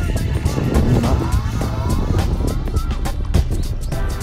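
Wind buffeting the phone microphone in a heavy, uneven low rumble, with background music over it.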